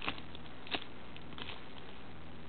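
Clear plastic Ziploc bag handled in the hand, giving two faint crinkling clicks, one at the start and one about three-quarters of a second in, over a steady low hiss.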